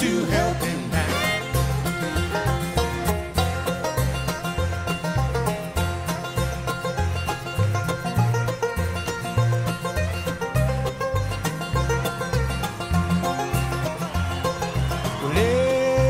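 Bluegrass band playing an instrumental break: fast banjo picking leads over strummed acoustic guitar and an upright bass thumping a steady alternating two-beat. A long bending, sliding note comes in near the end.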